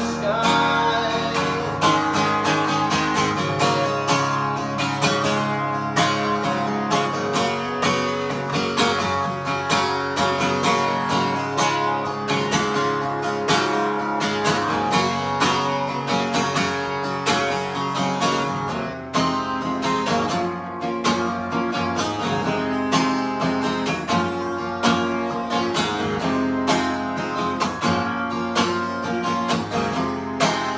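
Acoustic guitar strummed steadily through an instrumental passage between sung verses, its strokes coming in an even, unbroken rhythm.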